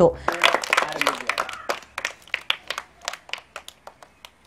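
Scattered hand clapping from a small group: uneven, sharp claps, several a second.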